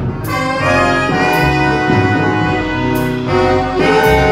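A jazz orchestra's horn section of saxophones, trumpet and trombone plays held chords that move from one to the next. Cymbal strokes sound a few times.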